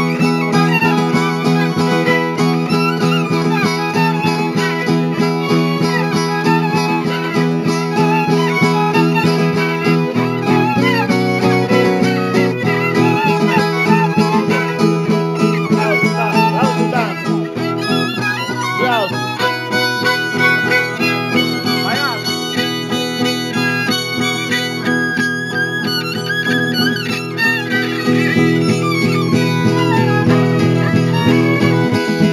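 Traditional Oaș folk music: a ceteră (fiddle) playing a melody with sliding notes over a zongoră strumming a steady rhythmic chord accompaniment.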